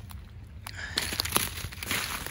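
Footsteps through dry leaf litter and twigs, crackling and rustling, louder and denser from about a second in.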